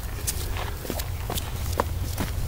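Footsteps on bare sandstone rock: several light, irregular scuffs and taps.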